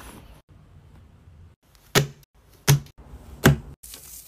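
Three sharp thuds, like items being set down on a hard surface. The first comes about two seconds in and the other two follow less than a second apart each.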